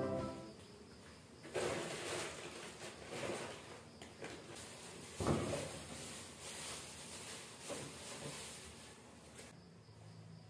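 Plastic shopping bags rustling and crinkling as they are handled, in irregular bursts with a few soft knocks.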